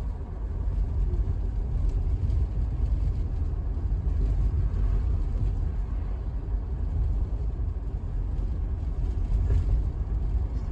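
Steady low road and engine rumble heard from inside a taxi's cabin as it drives along a road.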